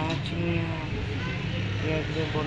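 Voices talking briefly at the start and again near the end, over a steady low hum.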